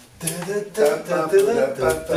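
A man singing the melody of a German pop song in short, wordless-sounding phrases.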